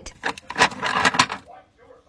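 Pieces of raw shungite clicking and clattering against one another in a plastic organizer tray as a hand rummages through them and picks some out, dying away after about a second and a half.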